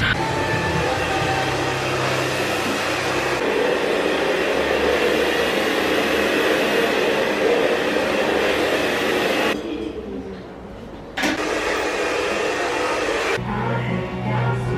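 Hair dryer blowing steadily, a rush of air over a motor whine. It cuts out for a moment near the end, then starts again.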